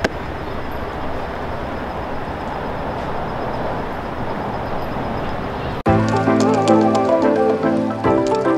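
Steady outdoor background noise with no distinct events, cut off suddenly about six seconds in by background music with pitched notes and sharp percussive ticks.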